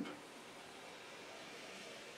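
Quiet room tone: a faint, steady hiss with no distinct sound events.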